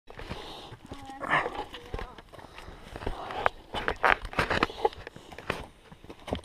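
Footsteps on a rocky hiking trail: an irregular run of scuffs and sharp knocks on stone and dirt. There is a brief bit of voice about a second in.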